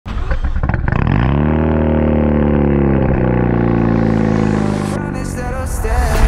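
Mazda RX-7 rotary engine breathing through a titanium Tomei Extreme Ti exhaust: a second or so of cranking, then it catches and settles into a steady, low idle that fades near the end as a rising hiss comes in.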